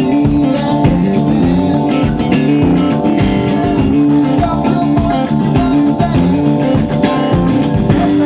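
Rock band playing live: sustained guitar chords over a steady drum beat.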